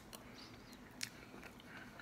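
Faint chewing of a mouthful of soft cheesecake, with a light click about a second in.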